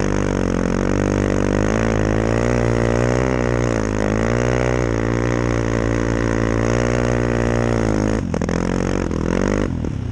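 Snowmobile engine running under throttle through deep snow, its pitch rising and falling gently with the throttle. A little after eight seconds in the revs drop off, then come back in short uneven surges near the end.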